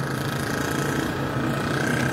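Street traffic: pickup trucks and a motorcycle driving past close by, their engines making a steady hum.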